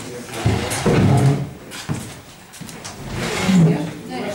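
Indistinct voices of people talking, in two stretches: about half a second to a second and a half in, and again from about three seconds in.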